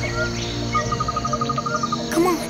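Cartoon jungle ambience: insects chirping, with a fast, even trill of short chirps starting under a second in, over a low steady drone.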